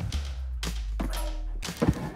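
Background music with a low held bass note. Over it come a few sharp clicks and knocks, about half a second in, at one second and just before the end, from a camp propane burner and its hose fitting being handled and connected.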